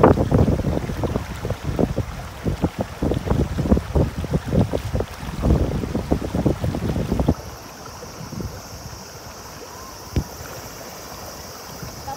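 Shallow river rapids running over a stony bed, with loud, gusty buffeting on the phone microphone for about the first seven seconds. The buffeting stops abruptly and a steady, quieter hiss of flowing water remains.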